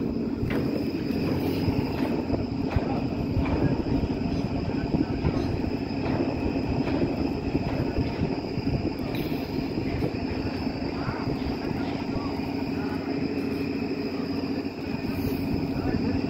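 Heavy construction machinery running with a steady whine and rumble, with scattered metal clanks and faint voices.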